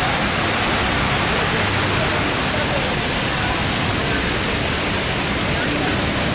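Steady, even rush of water pouring down the walls of a 9/11 Memorial reflecting pool, with faint voices of the crowd around it.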